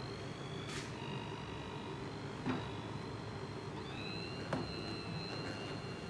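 Bamix immersion blender running steadily with a high whine, blending raspberries into chilled skim milk. The whine shifts pitch slightly about four seconds in, and two faint knocks come through.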